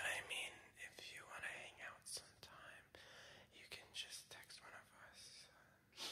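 A person whispering faintly, in short broken phrases.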